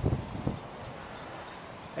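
Outdoor background with a few low rumbles on the microphone in the first half second, then a faint steady hiss.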